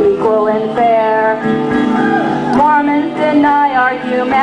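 A woman singing with a strummed acoustic guitar.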